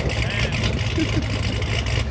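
The supercharged Hemi V8 of a modified Jeep Grand Cherokee Trackhawk idling through an aftermarket exhaust, a steady low rumble.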